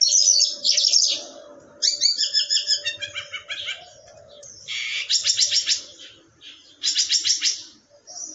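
A caged lark singing: loud, high phrases of rapidly repeated notes and trills, about four phrases separated by brief pauses, the later ones fast pulsing runs.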